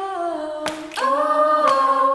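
Female a cappella group singing a part song in close harmony, holding one chord and then moving to a louder one about halfway through. A couple of sharp clicks fall just before the new chord.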